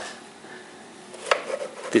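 Quiet background broken by two short sharp knocks, one just past a second in and a louder one near the end, as the hard plastic intake housing over the engine is handled.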